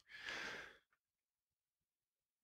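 A single short breath, about half a second long, taken near the start between spoken sentences; the rest is silence.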